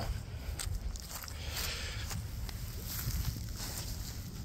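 Footsteps on dry grass, a few faint scuffs over a steady low rumble.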